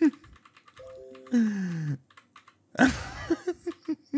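Computer keyboard typing, quick clicks throughout, with a few brief musical notes about a second in and a man laughing near the end.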